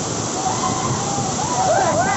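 Loud, steady rush of muddy water cascading over and between boulders. Voices call out over the water noise in the second half.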